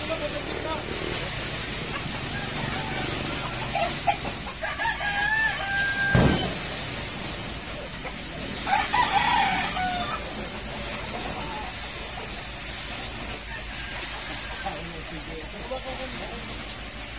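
A rooster crowing twice, the first call about four and a half seconds in and the second near nine seconds. A single heavy thud sounds between the two calls.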